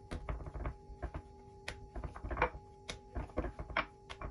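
Hands patting and pressing a ball of yeast dough flat on a wooden board: an irregular run of soft taps and thuds, a few sharper ones among them.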